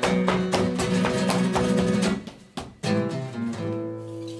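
Background music: flamenco-style guitar strummed in rapid, even strokes, which break off about two seconds in. After a short gap a sustained chord rings on.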